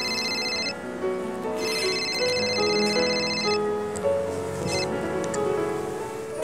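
Mobile phone ringtone playing a melodic tune with a high pulsing trill: two long rings and a short one, then it stops as the call is answered.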